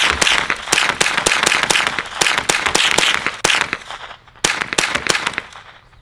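.22 rifle fired rapidly: a fast string of sharp shots, pausing briefly about four seconds in, then a few more.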